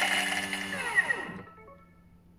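Thermomix blade pulverising four garlic cloves at speed 8, cutting off about three quarters of a second in and spinning down with a falling whine. A faint short electronic chime from the machine follows near the end.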